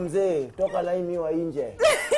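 Human laughter: a drawn-out run of short, repeated cackling cries.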